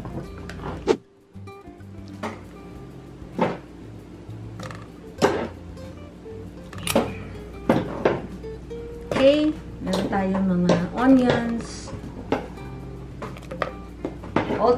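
Background music, with sharp clinks of a utensil against a metal pot at irregular intervals, about one a second, as kimchi is put into it.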